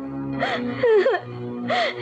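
A woman sobbing: two short gasping sobs, one about half a second in and one near the end, over soft sustained background music.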